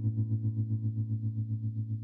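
Electric guitar holding a low note through a Maestro Mariner tremolo pedal, its volume pulsing evenly about six times a second as the note slowly dies away.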